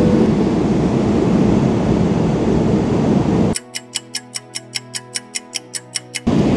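Steady roar of a Boeing 777-300ER cabin in cruise, with a short beep right at the start. About three and a half seconds in, the cabin noise cuts off abruptly and is replaced by a clock-like ticking, about six ticks a second, over music.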